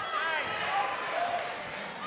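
Fight crowd shouting, many raised voices overlapping with no clear words.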